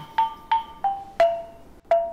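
Background music: a tuned mallet percussion instrument plays about five struck notes, each ringing briefly and stepping slightly down in pitch, with a short pause near the end.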